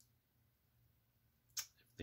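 Near silence: room tone with a faint steady low hum, broken near the end by a breath as speech resumes.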